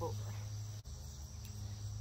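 Steady chorus of crickets and other insects, with a low steady hum beneath it and a brief dip in the sound just under a second in.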